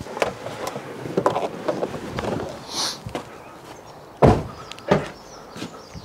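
A car door on a 2014 Fiat 500 shut with a single solid thud about four seconds in, the loudest sound, after a few seconds of rustling and handling noise as someone climbs out. A lighter knock follows about a second later.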